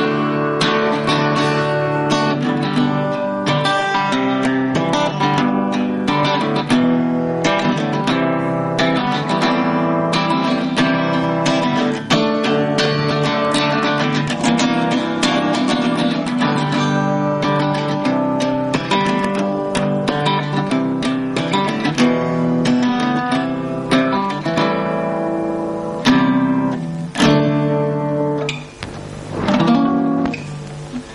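Acoustic guitar music, strummed and plucked chords, with no singing; it grows sparser and uneven near the end.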